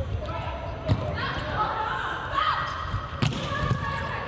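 A volleyball rally in an indoor arena: the ball is struck by hand with sharp smacks at the start, about a second in and again past three seconds. Players' voices call out between the hits.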